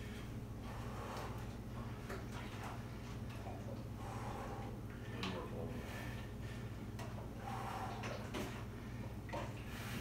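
A steady low hum, with faint breaths and small movement noises scattered over it.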